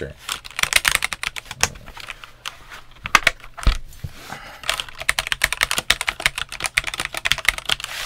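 Typing on a Redragon K596 Vishnu TKL mechanical keyboard: a quick run of key clicks, a short lull a couple of seconds in, then a single low thump just before the middle, followed by a fast stretch of typing.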